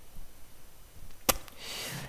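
Quiet room tone broken by a single sharp click a little over a second in, followed by a short breath drawn in just before speaking.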